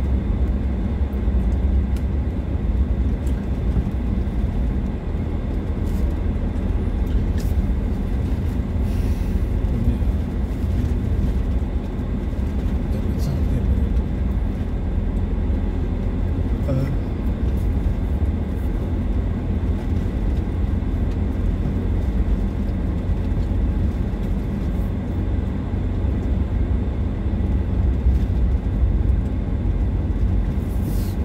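Vehicle driving on a dirt road, heard from inside the cabin: a steady low rumble of engine and tyres, with scattered light clicks and rattles.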